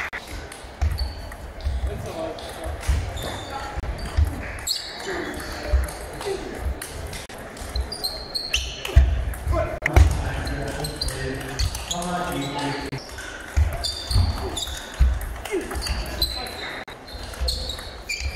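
Table tennis rally in a large sports hall: a celluloid ball clicking repeatedly off bats and the tabletop, with thuds of footwork and short squeaks on the wooden floor. Voices and the play at other tables sound in the background of the echoing hall.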